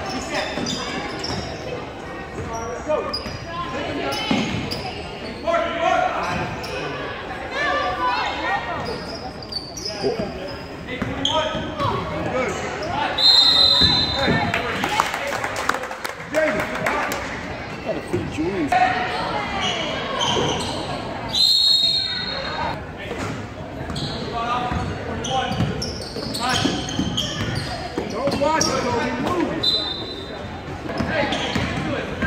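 A basketball being dribbled and bouncing on a hardwood gym floor, with players' and spectators' voices echoing around the gym. Two brief high shrill sounds cut through, about 13 and 21 seconds in.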